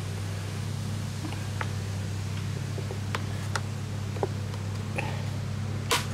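Scattered light clicks of the plastic recoil cover of a Honda GCV190 engine being handled and pressed into place, ending with a sharp snap near the end as it seats. A steady low hum runs underneath.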